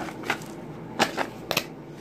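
About half a dozen short, crisp crunches and clicks close to the microphone: chewing crunchy pizza and handling a cardboard Pringles can.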